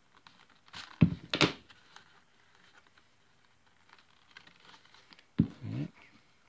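Thread being drawn through stitch holes in a leather holster during saddle stitching: two short, sharp rasping pulls about a second in, and another short pull sound near the end.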